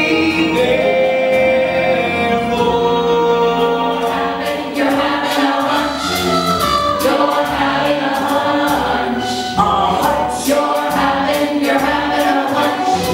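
Musical-theatre ensemble singing as a chorus with live band accompaniment. Drum hits come in more strongly from about five seconds in.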